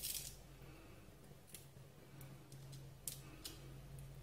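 Faint crackles and sharp clicks of a crab claw's shell being worked apart by hand as the meat is picked from it: a short crackly burst at the start, then a handful of separate clicks.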